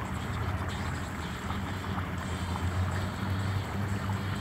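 Steady low outdoor background rumble with an even hiss underneath.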